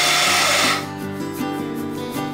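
Electric mixer-grinder pulsing as it coarse-grinds roasted horse gram and spices, cutting off suddenly under a second in. Background music carries on after it.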